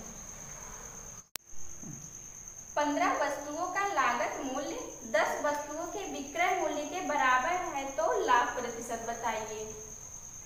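A steady, thin, high-pitched whine runs throughout, like a cricket's continuous trill. From about three seconds in, a woman's voice comes in over it. Just over a second in, a brief dropout to silence marks an edit.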